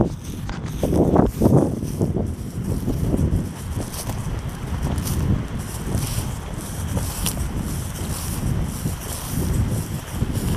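Footsteps walking through grass, with wind rumbling on the microphone, loudest about a second in.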